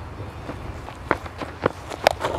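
Cricket bowler's running footsteps during the run-up to the crease: a handful of separate thuds, the strongest in the second half, over a low steady background rumble.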